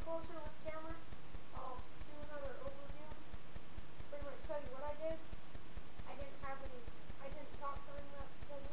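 A boy speaking indistinctly, his words muffled, over a steady rapid low ticking that runs under the whole recording.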